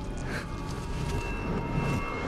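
Dramatic film underscore: a steady low rumbling drone with thin held high tones above it.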